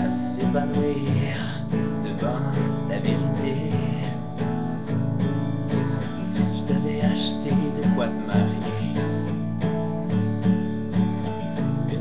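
Acoustic guitar strummed in a steady rhythm, playing an instrumental passage of a song without vocals.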